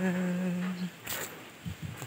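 A person's voice holding one steady low note for just under a second, like a hum, followed by a brief noise about a second in.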